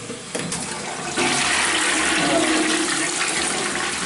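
A toilet flushed by its side lever: a couple of clicks as the lever is worked, then about a second in a loud, steady rush of water through the bowl.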